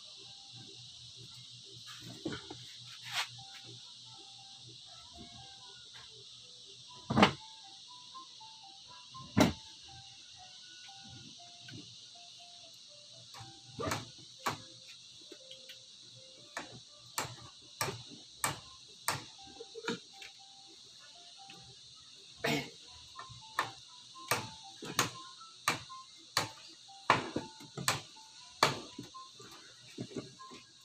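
Sharp clicks and taps from a hand tool working new upholstery fabric into a sofa seat: a few scattered at first, then a run of about two a second in the second half.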